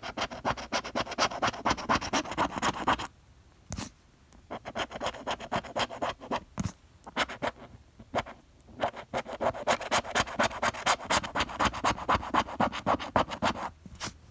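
A plastic scratcher tool scraping the coating off a paper scratch-off lottery ticket in quick back-and-forth strokes, in three spells with short pauses between them and a few single taps.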